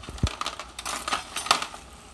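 Small hard items being handled and dropped while rummaging: a dull thump near the start, then several light clacks and clinks, the sharpest about a second and a half in.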